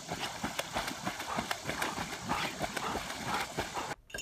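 A quick, irregular clatter of knocks and clicks, many per second, like hooves or feet on a hard surface.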